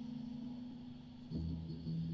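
Live rock band jamming. A sustained, droning chord fades down, then about 1.3 seconds in a new low bass note and plucked electric guitar come in.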